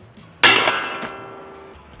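Mountainboard trucks striking a steel skate-park flat bar as the board locks on for a 50-50 grind: one loud metallic clang about half a second in, the bar ringing out over about a second.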